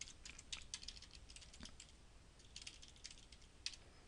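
Faint computer keyboard keystrokes, tapped in quick irregular clusters as a command is typed.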